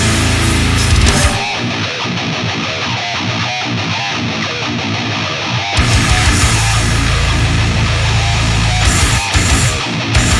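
Brutal death metal recording with heavily distorted guitars. About a second in, the bass and drum low end and the top end drop out, leaving a thinner guitar riff. The full band crashes back in a little before six seconds.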